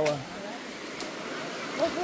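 Steady rush of a flowing river, with one short click about a second in.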